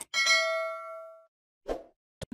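A mouse click followed by a bright notification-bell ding sound effect, ringing in several tones and fading out over about a second. A short soft thud comes near the end.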